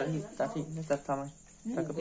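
A woman speaking in Thai, with a faint, steady, high-pitched cricket trill underneath.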